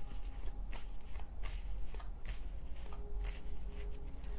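A tarot deck being shuffled by hand: a string of short, irregular card swishes, two or three a second.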